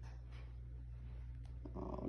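Steady low room hum with a few faint clicks. A woman's voice starts just at the end.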